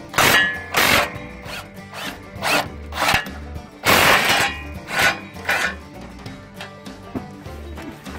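Socket ratchet on an extension loosening 17 mm bolts under a truck, making a run of irregular rasping strokes, several a few tenths of a second long. Background music with a steady low beat plays underneath.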